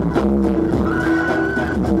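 Electronic dance music played live on a Roland keyboard synthesizer: a steady beat under sustained synth chords, with a high held synth line that comes back about every two seconds.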